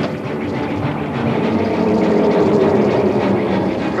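A steady rumbling sound effect with a low hum running through it, swelling a little past the middle.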